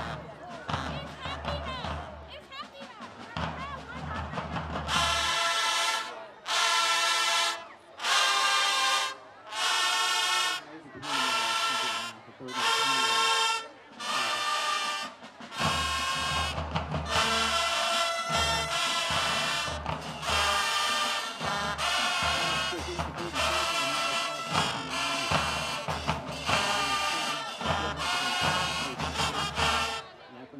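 Marching band playing: after a quieter first few seconds, a run of loud brass blasts about a second long with short breaks between them, then from about halfway the full band of horns, sousaphones and drums plays without a break.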